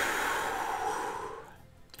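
A man's long, breathy exhale, a sigh that fades out after about a second and a half.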